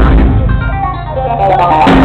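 Live funk band with electric guitar and keyboards playing loudly. Shortly after the start the drums drop out for about a second, leaving held pitched notes, and the full band comes back in near the end.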